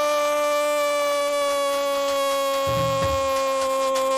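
A football radio commentator's long, held goal cry ("¡Goool!"), one unbroken note that sinks slowly in pitch. Low beats come in underneath near the end.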